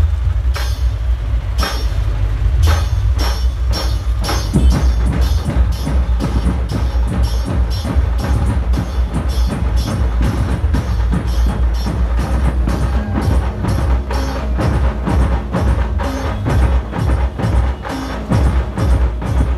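A dhumal band playing loud, amplified music: fast, dense drumming over a heavy bass.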